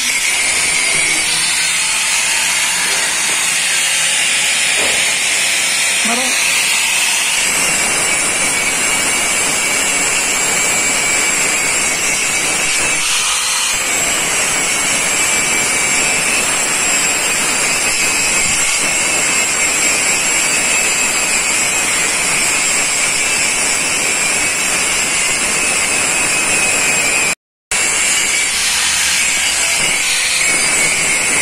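Handheld electric angle grinder running at full speed against steel rebar, giving a steady high whine with a grinding hiss. The sound cuts out briefly near the end.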